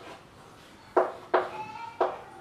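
Chalk writing on a blackboard: two sharp taps of chalk strokes about a second in, then a brief high squeak as the chalk drags, rising slightly in pitch near the end.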